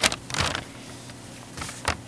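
Room tone picked up by a microphone during a pause in speech, with a few brief soft noises: one about half a second in, and a short breath just before the end as the speaker is about to go on.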